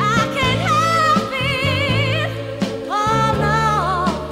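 1969 soul ballad recording: a high vocal line held with wide vibrato over bass and a sustained backing note. The sung phrase breaks a little after two seconds in and a new held note starts about a second later.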